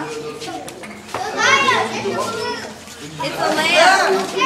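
Children's voices at a party: high-pitched calling and chatter that the recogniser could not make out as words, loudest a little over a second in and again near the end.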